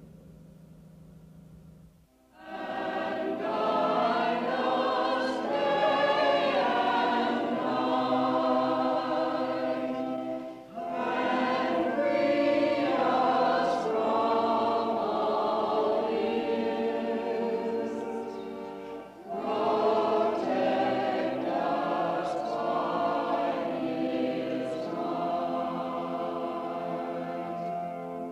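A congregation of men and women singing a hymn together. The singing comes in about two seconds in, after a brief hush, and breaks off briefly twice between phrases.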